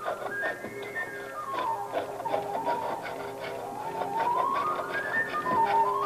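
Recorded virtuoso recorder music playing: a quick recorder run descends, then climbs back up near the end, over a held lower note.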